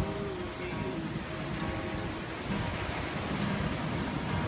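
Acoustic guitar playing a few sustained notes, over the steady wash of ocean surf and wind.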